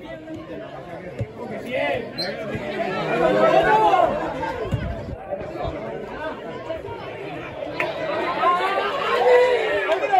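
Several voices of people around a football pitch talking and calling out at once, overlapping one another. They swell about three seconds in and again near the end.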